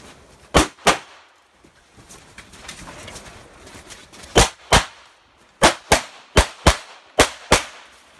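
Pistol shots fired as five quick pairs, ten shots in all, the two shots of each pair about a third of a second apart: double taps on each target. The first pair comes about half a second in, then a pause of over three seconds before the other four pairs follow in quick succession in the second half.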